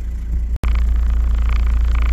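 Four-wheel drive's engine running, heard from inside the cab as a steady low drone. The sound drops out for an instant about half a second in and comes back a little louder.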